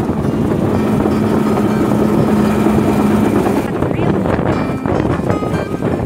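Outboard motor of a small open river boat running steadily under way, with wind and rushing water on the microphone. The steady engine hum breaks off a little past halfway, leaving wind and water noise.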